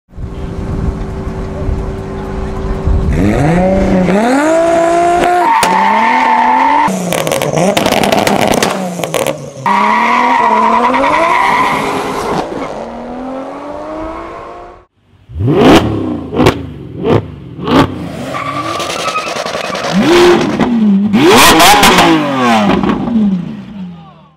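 Turbocharged drag-race cars accelerating hard, the engine note climbing in pitch and dropping at each gear change. Near the two-thirds mark comes a run of about four short, sharp revs, then more hard revving.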